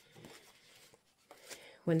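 Soft rustling of paper as a paper envelope and a book page are handled, with a couple of light taps; a woman's voice starts near the end.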